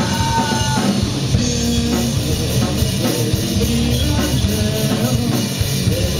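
Rock band playing live: drum kit with electric guitars, held guitar notes over a steady beat, with no singing in this stretch.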